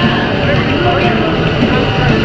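Live garage-punk band playing loud, distorted guitar, bass and drums, with a voice shouting over it.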